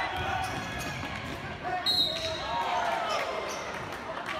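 Basketball being dribbled on a gym's hardwood floor, with spectators calling out and shouting. About two seconds in, a short, high, steady tone sounds.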